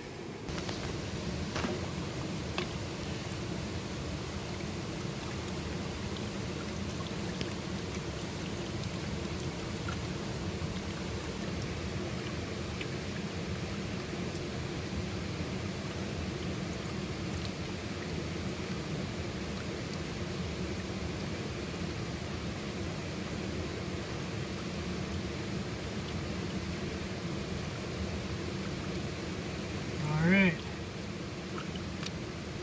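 Steady rush of shallow river water while a gold pan of gravel is worked in it, with a few faint clicks in the first few seconds.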